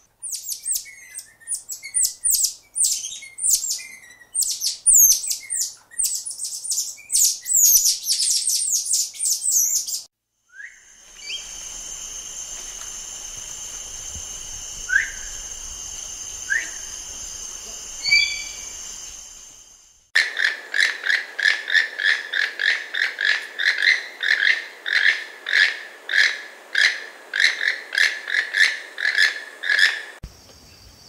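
Golden-headed lion tamarin giving a rapid series of high-pitched, downward-sweeping calls for the first ten seconds. Then a South American tapir gives a few short rising squeaks over a steady high-pitched background drone. In the last ten seconds a toucan calls over and over, about two calls a second.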